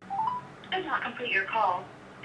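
A phone call heard through a mobile phone's loudspeaker: a brief rising tone, then a voice coming down the line, thin and cut off above the telephone band.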